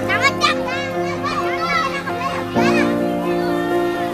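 Young children shouting and squealing as they play, over background music with held chords.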